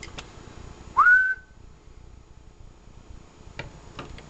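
One short whistle, rising in pitch, about a second in, whistled into the microphone of a Kenwood TS-440 to drive it on single sideband for a power-output test; a few faint clicks around it.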